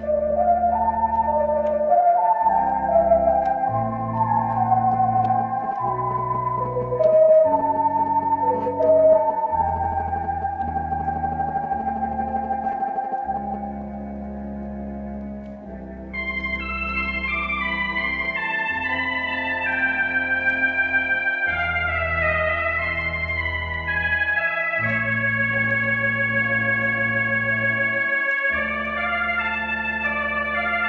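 Artisan electronic theatre organ playing a sustained, legato melody over held pedal bass notes that change every second or two. About halfway through the sound turns brighter, with higher chords and melody notes coming in.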